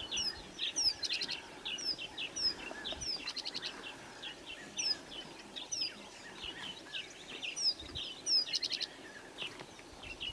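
Several birds chirping, one repeating a short high downward-sliding whistle about once a second among rapid trills and other calls.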